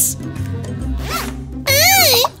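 Cartoon sound effect of chalk scratching on a chalkboard: a rapid rasping scrape over background music, ending about a second and a half in, when a short squeaky vocal sound starts.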